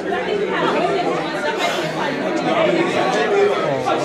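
Chatter of many overlapping voices in a crowded, echoing shop, with no single voice standing out.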